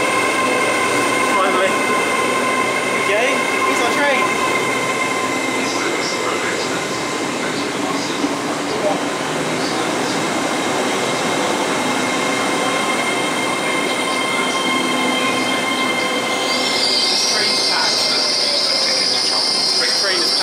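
Hitachi Class 802 bi-mode train running slowly alongside the platform as it arrives, with steady whining tones over the rumble of the coaches. A high-pitched brake squeal comes in near the end as the train slows to a stop.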